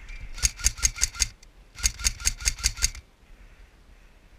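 Airsoft rifle fired in two short strings of rapid shots, about five shots a second and five or six shots in each string, with a brief pause between them.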